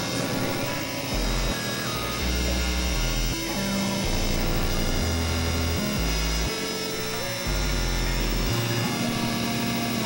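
Experimental drone music played on synthesizers (a Novation Supernova II and a Korg microKORG XL): a dense, noisy wash of many held tones over blocky low bass notes that jump to a new pitch at uneven intervals of about half a second to a second.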